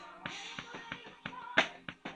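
Drum kit being played: a quick run of drum and cymbal hits, the loudest accent about one and a half seconds in, with pitched accompanying music underneath.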